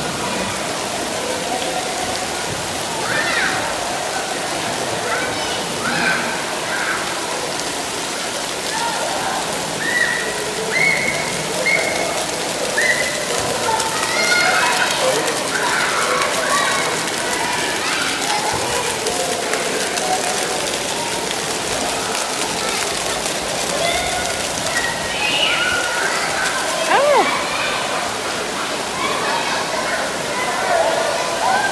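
Steady hiss of splash-pad fountains and water jets spraying onto shallow water, with children's voices calling out here and there over it.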